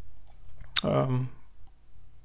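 Computer mouse clicks: faint ticks early on, then one sharp click about three-quarters of a second in.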